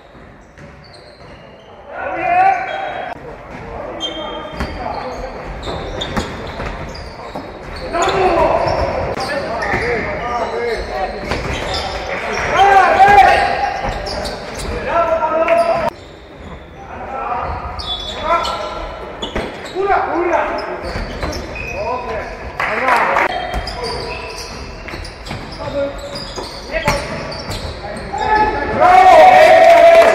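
Basketball game sounds in a large sports hall: a basketball bouncing on the wooden court, with players shouting and calling out, echoing. It is quieter for the first two seconds, and the level jumps abruptly a few times as the clips change.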